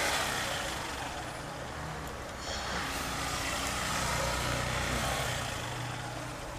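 Small motorcycle engine running at low speed as it is ridden slowly through jammed traffic, with a steady rush of wind and road noise on the microphone and other vehicles' engines around it.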